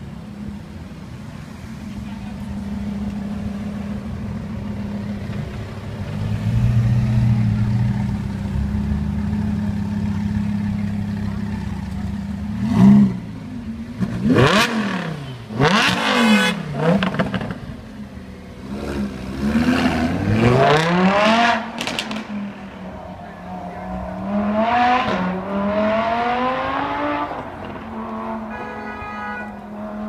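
Lamborghini Huracán Spyder's V10 idling steadily, then revved sharply a few times about halfway through and accelerating away. The note climbs and drops back with each upshift and fades as the car draws off.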